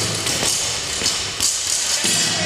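Loaded barbell with bumper plates dropped onto a rubber gym floor, landing with a thud.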